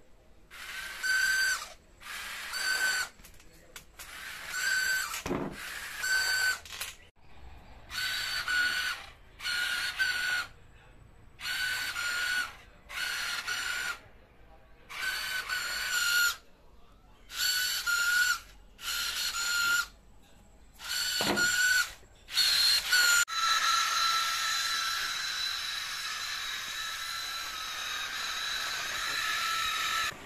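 Small DC gear motors of an Arduino robot car whining in a dozen or so short bursts of about a second each, starting and stopping as the car is test-driven back and forth. Near the end they run without a break for several seconds.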